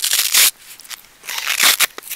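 Hook-and-loop (Velcro) fastening on a backpack hip belt being pulled apart, two short rasping rips about a second apart.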